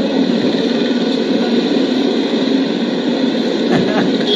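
Steady background noise of a busy street, with traffic running.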